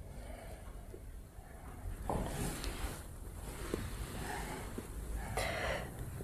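Faint breathing of a woman straining through a slow abdominal exercise, with two louder breaths, about two seconds in and near the end.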